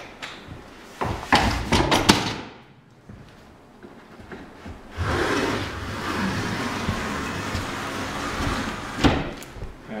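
A hand tool drawn along the edge of a panel, cleaning off the excess edge-banding tape: a few knocks and clatters about a second in, then a steady scraping along the edge for about four seconds, ending in a knock.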